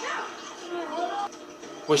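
A person's voice from the episode playing in the background, quieter than the room voice, in short rising and falling pitch glides.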